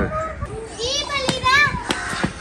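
Young children's high-pitched voices calling out, with a couple of sharp clicks in between.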